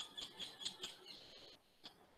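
A faint run of short, high squeaky chirps, about five in the first second, then a brief held high tone and a single click near the end.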